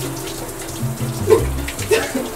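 Shower water running as a steady hiss, over background music with a stepping bass line.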